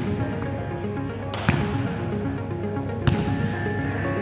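Background music with a steady melody. Over it come two sharp thuds about a second and a half apart, each with a short echo: a basketball bouncing on a sports-hall floor.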